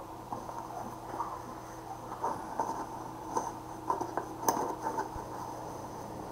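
Cardboard box being handled and worked open by hand: scattered soft scrapes and small clicks, with one sharper click about four and a half seconds in.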